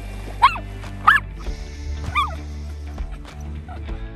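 A dog barking three times over background music, about half a second, a second and two seconds in; the first two barks are the loudest.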